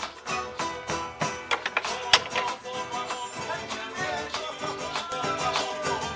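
Latin American music led by plucked acoustic guitar, with a quick run of picked notes and sharp accented strikes, one especially loud about two seconds in.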